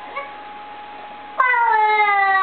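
A baby's long, drawn-out vocal call that starts suddenly near the end and slowly falls in pitch.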